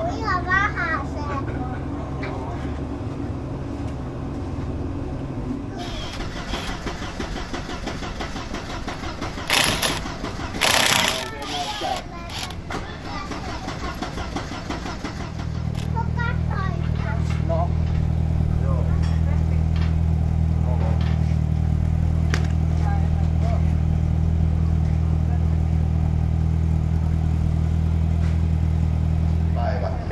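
An engine starts running about halfway through and then idles steadily with a low, even drone. Before that there is a quieter low hum, people talking, and two brief loud bursts.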